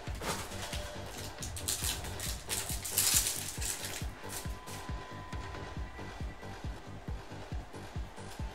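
Background music with a steady beat, over which a baseball card pack's wrapper is torn open with a crinkly rip, loudest about three seconds in, followed by lighter handling of the wrapper and cards.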